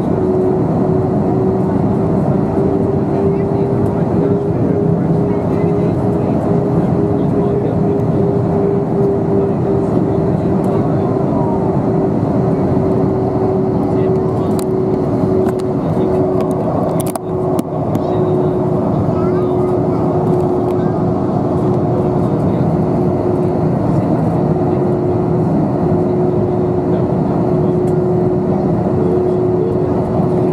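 Jet airliner cabin noise at a window seat during the descent: a steady engine roar with a constant droning tone from the engines. About seventeen seconds in the sound briefly dips with a couple of sharp clicks.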